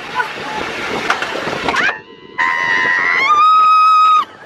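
Rollercoaster ride noise with rushing wind on the microphone. After a brief drop about two seconds in, a rider gives a long, high-pitched scream that steps up in pitch about a second later.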